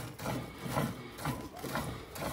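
Cow being milked by hand: a run of soft squirts of milk hitting the frothy milk in a nearly full metal bucket.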